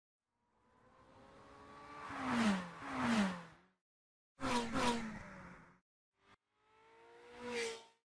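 Sound effects of cars speeding past in a series of whooshes. Each engine note swells and then drops in pitch as the car goes by, with two close passes, then another quick pair and a last swell near the end.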